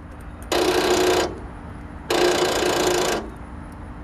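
Troy-Bilt riding mower's electric starter keyed twice on a nearly dead battery: two short buzzing bursts, the second a little longer, as it tries to turn over without the engine catching.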